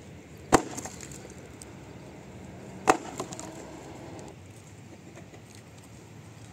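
Axe chopping a dry log: two sharp wooden strikes about two and a half seconds apart, the second followed by a smaller splintering crack.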